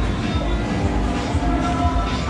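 Busy underground shopping arcade ambience: a steady low rumble with shop background music and scattered voices.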